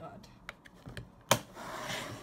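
A plastic makeup palette being handled and shut: a few light clicks, then one sharp clack a little over a second in, followed by a brief rustle of handling.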